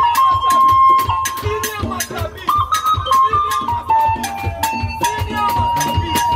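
Electronic keyboard played live: long held high lead notes and shorter melodic runs over a steady percussion beat.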